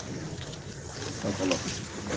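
A pause in a man's speech: a low steady hiss, with a faint short vocal sound a little past the middle.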